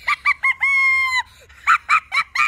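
A rooster crowing: three short notes followed by one long held note, then two more short calls near the end.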